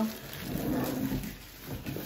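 Cardboard box and plastic wrapping rustling and scraping as a boxed high chair is worked out of its packaging.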